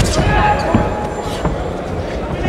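Boxing gloves landing with a few sharp thuds as two heavyweights trade punches at close range, over steady arena crowd noise and voices.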